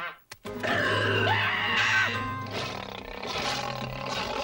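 Cartoon soundtrack music with a creature's roar mixed in, starting after a brief silent break about half a second in.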